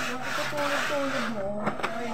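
Wet carpet being scrubbed by hand, a rough rubbing noise in quick repeated strokes that stops a little over halfway through, followed by a few sharp clicks. A voice sounds faintly underneath.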